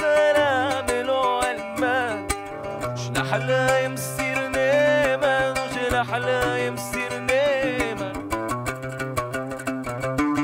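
A man singing with wavering, ornamented melismatic lines, accompanying himself on an oud with a steady run of plucked notes, in a song from the Syrian and Ottoman Jewish repertoire.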